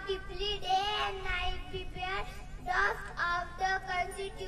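A young boy's high voice at a microphone, delivering a recitation in long, drawn-out, sing-song phrases with brief pauses between them.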